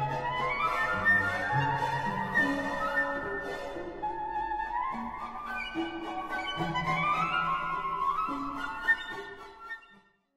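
Symphony orchestra playing, with woodwinds running upward in repeated rising scales over held low notes; the music fades out near the end.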